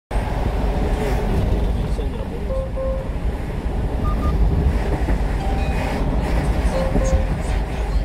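Steady low road and engine rumble from a 1-ton refrigerated box truck on the move, with a few short electronic beeps.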